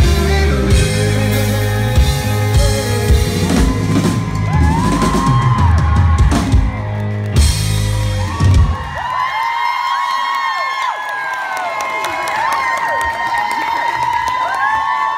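Live rock band, with drum kit, bass and electric guitars, playing the song's final loud bars and stopping about eight and a half seconds in. The audience then cheers and whoops.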